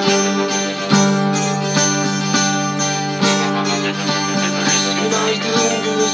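Cort electric guitar played over a full rock backing track, with continuous picked notes and sustained low chords.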